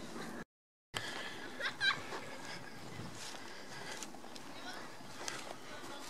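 Faint outdoor background with distant voices and a short, high-pitched call about two seconds in. The sound drops out entirely for a moment near the start.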